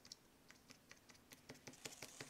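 Faint, irregular light taps and scratches of an old, worn bristle paintbrush dabbing paint onto a small piece of paper, about ten in two seconds.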